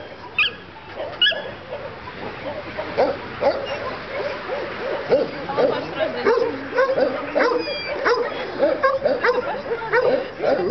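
Several dogs barking and yipping, many short overlapping barks with no pause.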